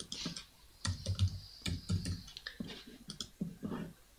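Typing on a computer keyboard, with mouse clicks: a run of irregular, light key taps.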